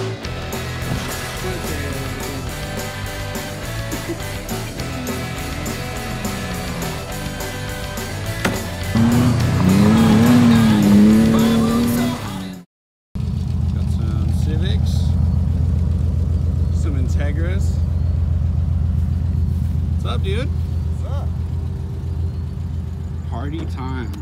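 Music with a steady beat and a melodic line, cutting off abruptly about halfway through. After a brief gap, a BMW E36's inline-six engine runs with a steady low drone while the car drifts on dirt.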